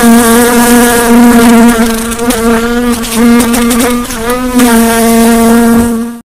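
Fly buzzing in flight: one loud, steady, even-pitched drone whose pitch wavers a little in places.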